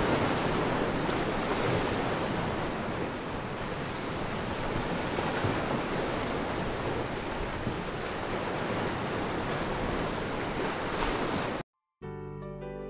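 Ocean surf: a steady wash of breaking waves, cutting off abruptly near the end.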